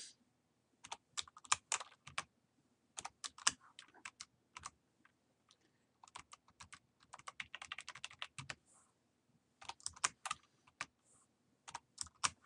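Computer keyboard typing: irregular runs of short keystrokes with brief pauses between them.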